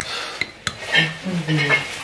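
Metal spoon clinking against a glass honey jar and a ceramic bowl as honey is spooned onto yogurt and stirred in, with a few sharp clinks in the first second.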